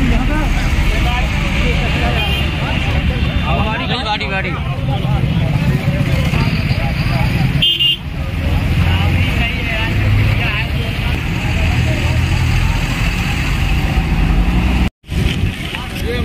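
Highway traffic passing close by: a low steady rumble of heavy trucks and other vehicles, with a vehicle horn sounding briefly about halfway through. People's voices talk in the background.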